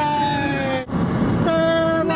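Long held sung notes: a voice sliding down in pitch and holding, then after a short break a new steady note sustained.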